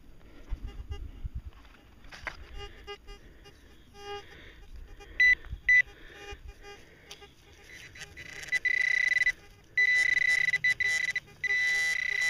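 Garrett Pro-Pointer pinpointer probing a plug of dug soil, with a high electronic tone. It gives two short beeps about five seconds in, then sounds almost continuously from about eight and a half seconds with a few short breaks. This is the pinpointer signalling metal in the plug, which the hunter takes for a lead Minié ball.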